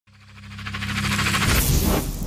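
Logo intro sound effect: a swell that rises from near silence to loud over about two seconds, with a fast fluttering pulse over steady low tones, surging into a rush near the end.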